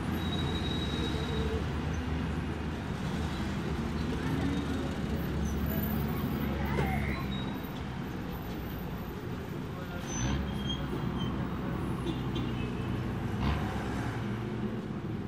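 Road traffic on a street: a steady rumble of passing cars.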